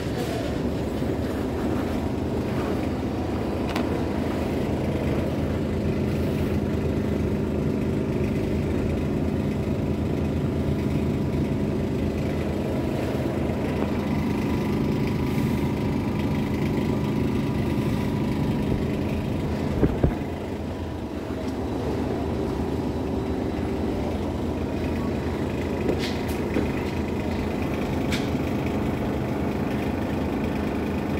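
Steady low rumble with a hum running under it, the continuous background noise of a supermarket floor. Two short knocks sound about two-thirds of the way through, and a couple of faint clicks come near the end.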